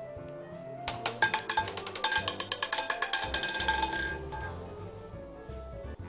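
Roulette ball rattling over the frets and pockets of a spinning roulette wheel: a quick run of clicks, about ten a second, starting about a second in and thinning out over some three seconds as the ball settles, over steady background music.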